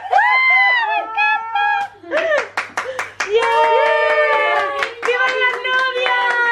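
Women's high-pitched excited cries and squeals, with quick hand clapping about two seconds in and again near the end.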